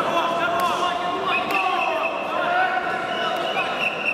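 Crowd of spectators shouting and calling out at once, many voices overlapping and echoing in a large sports hall, with two short sharp knocks about half a second and a second and a half in.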